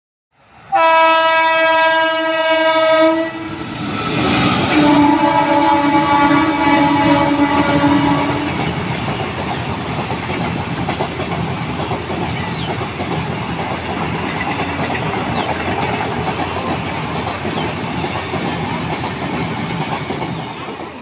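Indian Railways train horn sounding two long blasts, the second a little lower in pitch and longer. After them comes the steady rumble and clatter of passenger coaches passing at speed.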